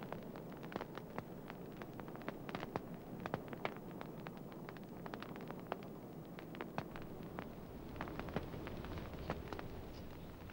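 Wood campfire of sticks and logs crackling, with many small sharp snaps and pops coming at an irregular pace over a faint steady background noise.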